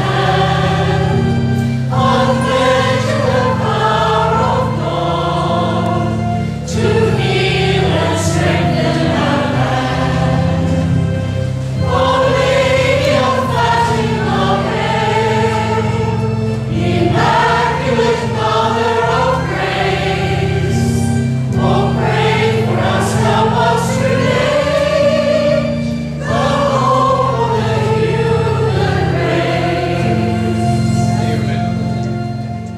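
Mixed church choir of men and women singing a hymn in phrases with short breaths between them, over a sustained low chordal accompaniment.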